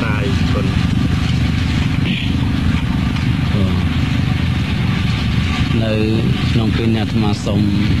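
A man speaking in short phrases, mostly in the second half, over a steady low rumble that does not change.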